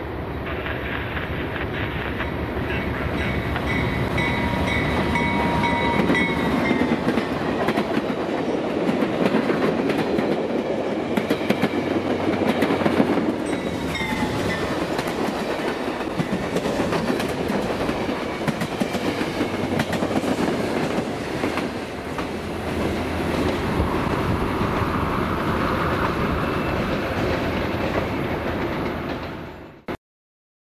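A train passing close by, led by a BNSF Dash 9 diesel locomotive. Its horn sounds a long blast of about five seconds that drops in pitch at the end, and a shorter blast follows about halfway through. Rail cars roll past with a steady clickety-clack of wheels over the rail joints.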